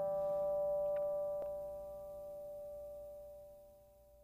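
Acoustic guitar chord ringing out and slowly fading away, with a faint pluck about a second and a half in.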